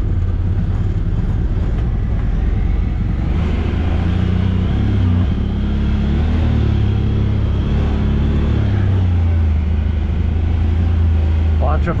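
Honda Talon X side-by-side's parallel-twin engine running at low revs, heard from the cab, as the machine crawls over a rough off-camber trail. The engine note rises and falls a little with the throttle.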